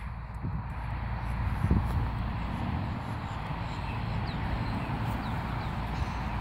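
Steady outdoor background hiss, with one soft low thump about two seconds in and a few faint, short, high bird chirps in the last couple of seconds.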